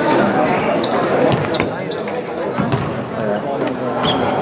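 A basketball bouncing a few times on a hardwood gym floor, heard as sharp knocks over a steady hubbub of voices in the hall.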